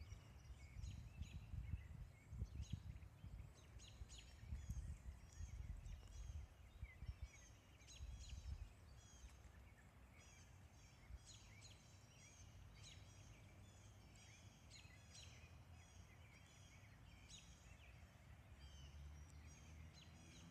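Faint songbirds chirping in woodland, short high calls repeating on and off. A low rumble on the microphone underlies the first nine seconds or so.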